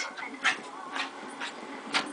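Two small dogs playing rough together, with short, sharp dog sounds about every half second.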